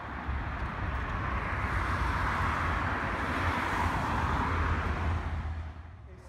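Road traffic: a car passing on the road, its tyre and engine noise swelling to a peak about four seconds in over a steady low rumble, then cutting off abruptly just before the end.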